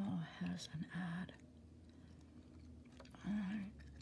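Close-miked gum chewing, with short hummed vocal sounds from a woman in about the first second and again briefly near the end.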